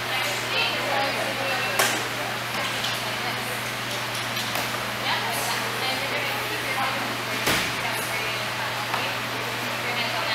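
Indistinct talking voices over a steady low hum, with a sharp knock about two seconds in and another past seven seconds.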